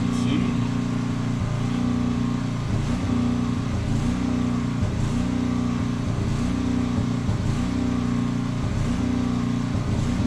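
A motor running steadily: a low drone that wavers regularly about once a second.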